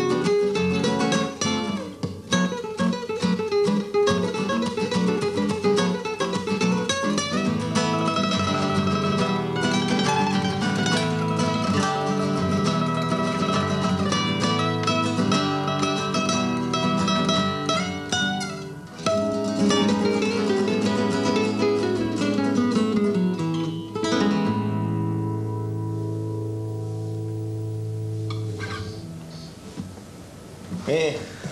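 Two nylon-string acoustic guitars playing a Latin guitar duet with quick plucked runs. A descending run leads into a final chord that rings for about five seconds and dies away near the end.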